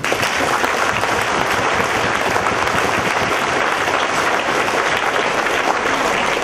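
Audience applauding: dense, steady clapping that breaks out all at once and holds at full strength.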